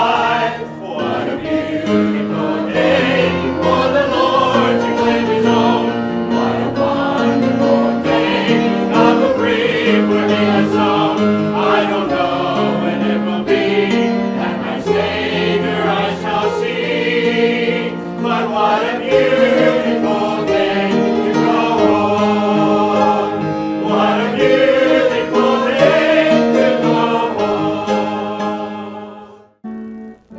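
Church choir of men and women singing together in full voice, the sound tapering off at the very end.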